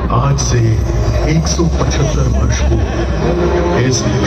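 A crowd's voices over a loud, steady low rumble from the show's loudspeakers, with a few short hissing bursts.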